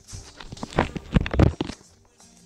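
Handling noise from the recording device: a quick run of knocks and rubs as a hand grips and turns it, starting about half a second in and lasting about a second.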